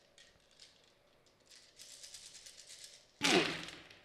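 A big handful of six-sided dice rattling in a cupped hand, then thrown onto the gaming table a little after three seconds in, landing with a loud clatter as they tumble and settle.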